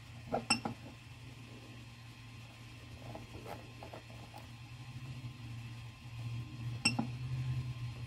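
Voxelab Aquila's control-panel buzzer giving two short high beeps as its rotary knob is pressed to edit and then confirm the probe X offset, about half a second in and again near the end. Faint clicks of the knob turning come between them, over a steady low hum.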